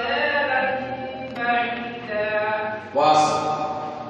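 Quran recitation, chanted in long melodic phrases with held notes, about three phrases in turn.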